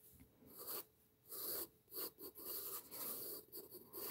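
Pencil scratching on sketchbook paper, faint, in a run of separate strokes of a second or less each as long curved lines are drawn.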